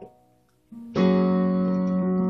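A piano chord played on a Yamaha Portable Grand digital keyboard, struck about a second in and held ringing, with a single low note just before it.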